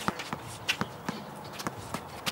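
A basketball being dribbled on an outdoor hard court, a series of sharp, irregularly spaced bounces, with players' shuffling footsteps.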